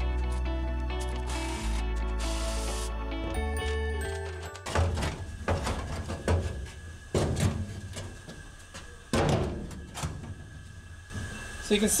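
Background music for the first four and a half seconds, then a string of irregular metallic knocks and scrapes as a rusted steel cover panel is worked loose and lifted out of a pickup's steel bed floor.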